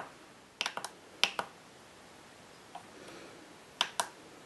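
Plastic menu buttons on a Turnigy 9X radio transmitter clicking as they are pressed. There are three quick clicks just after half a second in, two more about half a second later, and a single click near the end.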